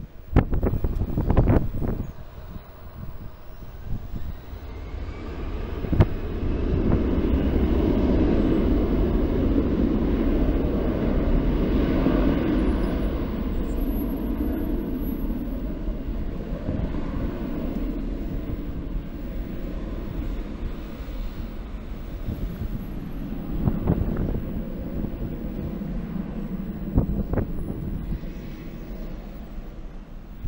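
An Air Canada narrow-body twin-jet airliner landing, its engines' rumble swelling to a peak about a third of the way in and then slowly fading as it rolls out down the runway.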